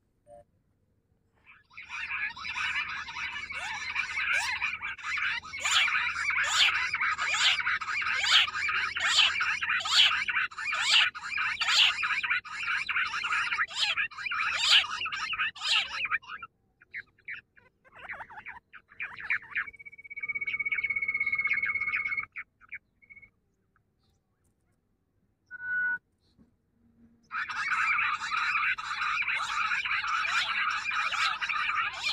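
Grey francolin (teetar) calling in a loud, fast repeating series, about three notes every two seconds, which cuts off suddenly. A steady high whistle lasts a couple of seconds, and the calling starts again near the end.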